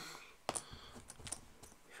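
Game coin tokens clicking as they are picked up and set down on the table: a string of small sharp clicks starting about half a second in, with the first one the loudest.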